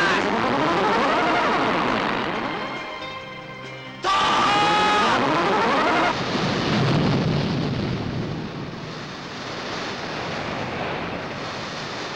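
Soundtrack sound effects: a rushing, jet-like whoosh with sweeping pitch for the first few seconds. About four seconds in it cuts to a short burst of held, wavering tones, then gives way to a broad rushing noise like crashing surf.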